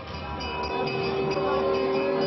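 Music with a long steady held note, with a second higher note sustained above it, starting about half a second in.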